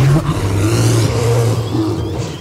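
A yeti's long, deep roar, with a rushing noise over it. It starts suddenly, holds for about a second and a half, then fades.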